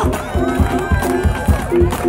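Live soul band playing a steady beat, with drum kit, electric guitar and keyboard.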